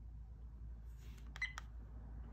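Vantrue N2 Pro dash cam beeping twice in quick succession, about a second and a half in. The beeps are its alert that no SD card is inserted.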